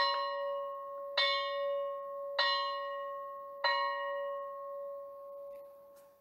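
A single bell struck four times on the same note, about a second and a quarter apart. Each strike rings on over the one before, and the last fades away near the end.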